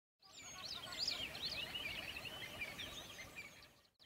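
A fairly quiet chorus of small birds chirping and singing, with many short, quick high chirps overlapping. It fades in just after the start and fades out shortly before the end.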